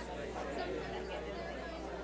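A room full of people talking at once in pairs: overlapping conversation with no single voice standing out, over a steady low hum.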